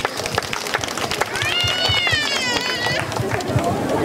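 Scattered hand clapping, many irregular claps, with a child's high-pitched voice calling out for about a second and a half in the middle.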